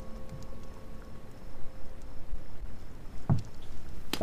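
A lull in the soft background music: held notes fade out in the first half-second, leaving a steady low background hiss, with one short, soft low thud a little after three seconds in.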